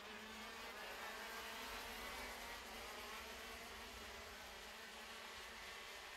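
A pack of KZ2 shifter karts, their 125cc two-stroke engines buzzing together, faint and steady, with several engine pitches overlapping.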